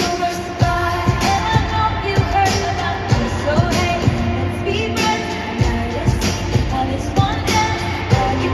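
Live pop song played over a stadium sound system: a woman singing lead into a microphone with a band and a steady drum beat, recorded from among the crowd.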